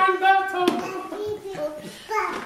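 A voice making wordless sounds, with one sharp knock about two-thirds of a second in.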